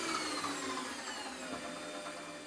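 Warco WM180 lathe running, its motor and spindle whine falling steadily in pitch and getting quieter as the speed control is turned down from just over 3000 RPM.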